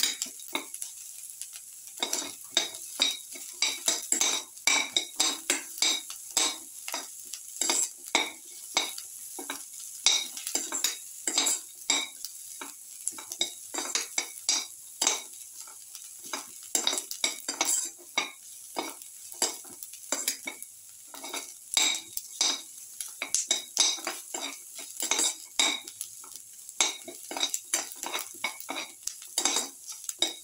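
Spatula scraping and knocking against a metal pan in quick, irregular strokes while stirring sliced onions and garlic cloves frying in oil, over a faint steady sizzle.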